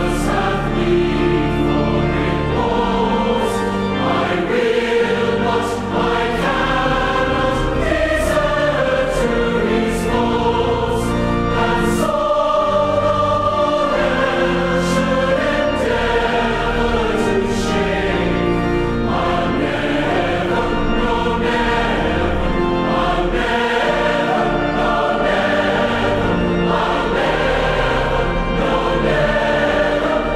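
Background music: a choir singing a Christian hymn.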